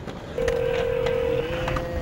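Telephone ringing tone heard over a phone line: a click, then one steady tone of about a second that drops to a fainter tone near the end, over a low hum from the line.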